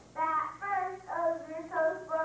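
A child singing solo into a microphone, in short sung phrases that glide between held notes.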